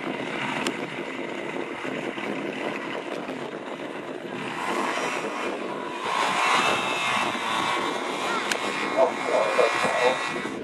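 Small microlight aircraft engine and propeller running as it taxis past on grass, growing louder with the pitch shifting as it comes closest about five to seven seconds in.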